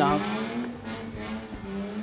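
A motor vehicle passing by, its engine note falling in pitch over about the first second. A steady background music note runs underneath.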